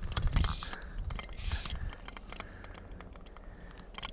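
Sharp, irregular clicking with two short hissing scrapes in the first two seconds, then quieter clicks: handling noise from a fly rod, line and reel as the line is worked in by hand and the reel is taken up.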